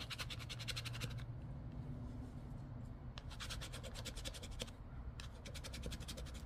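A poker chip's edge scraping the coating off a lottery scratch-off ticket in quick, rapid strokes. There are two spells of scratching with a pause of about two seconds between them.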